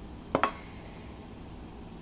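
A single short tap or knock about a third of a second in, as a wooden spoon pushes crumbled chorizo out of a glass baking dish; otherwise faint room noise.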